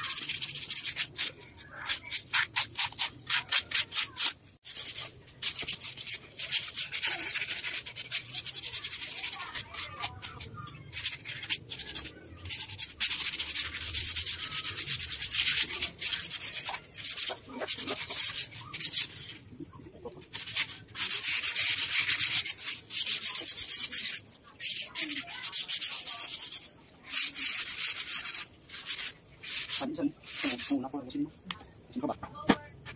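Hand sanding of a driftwood table base: an abrasive scratching in quick back-and-forth strokes at first, then longer runs of scratching broken by short pauses.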